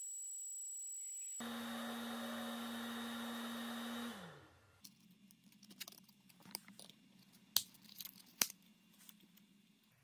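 LaserPecker 2 blue diode laser engraver running with a steady high whine, then a louder hum whose low tone drops in pitch and stops about four seconds in as the machine winds down. Then light clicks and taps of cut 2 mm black acrylic being handled on the finned metal base, with two sharper clicks near the end.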